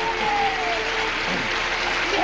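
Studio audience applauding steadily, with a voice calling out over it in the first second.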